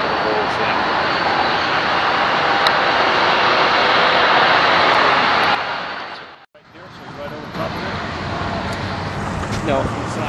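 Steady rushing and rolling noise of Amtrak Superliner passenger cars moving past, which fades out a little past halfway. After a short gap, a quieter outdoor background with faint voices.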